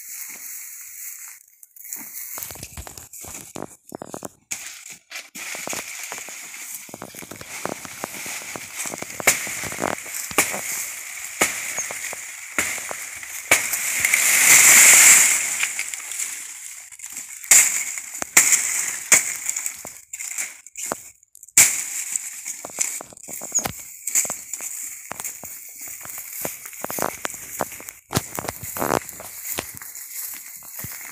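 Crackling and rustling of footsteps and handling in dry banana leaves and grass: irregular sharp cracks throughout. A loud hissing swell rises and falls around the middle.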